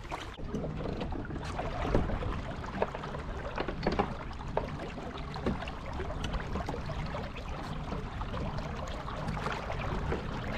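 Fishing kayak moving through calm water: a steady swish of water along the hull, with a few short knocks from the boat and gear about two to five seconds in. The kayak is paddled at first, then driven by its pedals.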